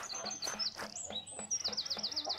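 Small birds chirping: short, high, repeated notes, with a quick run of falling chirps about halfway through.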